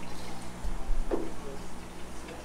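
Aquarium water sounds over a steady low hum of tank equipment, with a low thump a little past half a second in.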